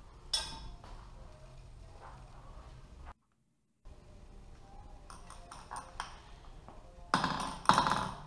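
Light taps and clinks of metal engine parts being handled on a workbench, with a louder clatter near the end. The sound drops out to silence for under a second near the middle.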